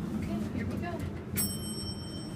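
Dover hydraulic elevator's arrival bell striking once about one and a half seconds in: a single high ding that rings on steadily.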